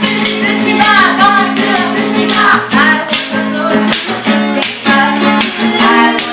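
A song played live: singing voices over a strummed guitar, with tambourine or similar hand percussion.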